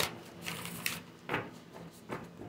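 A deck of tarot cards shuffled by hand: a rustling, papery riffle in the first second, then a short tap of the cards a little after a second in.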